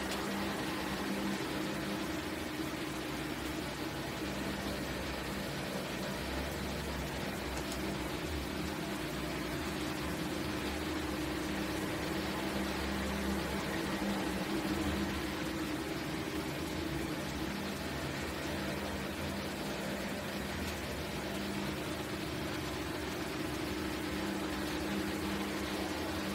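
A steady low hum with an even hiss beneath it, unchanging throughout: background room noise from a running appliance or fan.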